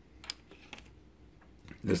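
Faint handling noise: a few soft, separate clicks and taps as small parts are moved about by hand on a work mat, with a man's voice starting near the end.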